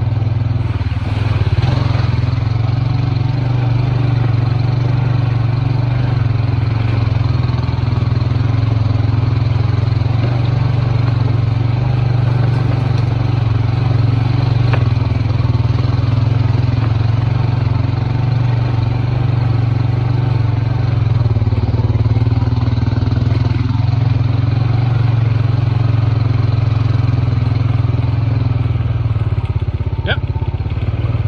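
A vehicle's engine running at a steady low drone while driving along a rough dirt trail, with road and ride noise over it.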